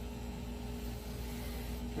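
Tattoo machine running with a steady buzzing hum while inking skin.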